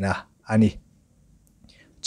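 Speech only: two short spoken syllables, then a pause with near silence.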